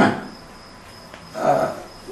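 Mostly a quiet room with a faint, steady high-pitched tone running through it. A man's voice ends a question at the start and gives a short hesitant 'ee' about a second and a half in.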